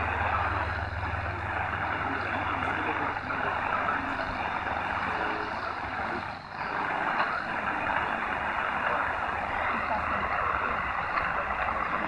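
Degen DE1103 portable receiver tuned to 4010 kHz AM, playing a weak Birinchi Radio shortwave signal barely above heavy static, with a low hum underneath. The static holds steady, with a brief dip about six and a half seconds in.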